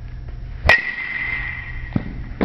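Metal baseball bat striking a ball: one sharp ping about a second into the swing, ringing on in a clear high tone for over a second. A fainter knock follows near the end.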